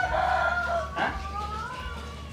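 A rooster crowing: one long call that lifts slightly in pitch past the middle and drops away at the end, over a steady low hum.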